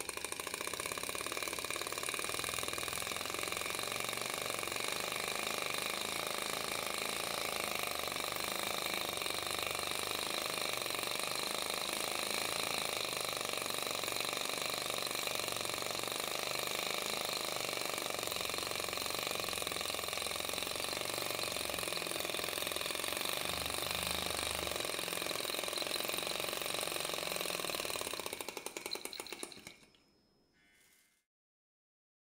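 Small flame-licker (vacuum) model engine running steadily at speed, its piston, valve and flywheel making a continuous rapid mechanical running sound; the sound fades out near the end.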